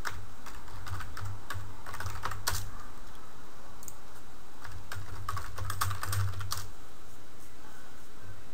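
Typing on a computer keyboard: a run of quick keystrokes in the first two to three seconds, a pause, then a second run from about four and a half to six and a half seconds in, as a web address and then a search query are entered.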